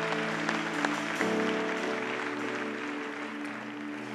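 Soft sustained chords from a live worship band, shifting to a new chord about a second in and slowly fading, with audience applause underneath.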